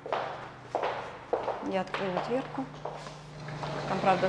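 Lawn mower engine running outside as a steady low hum, growing louder about two seconds in.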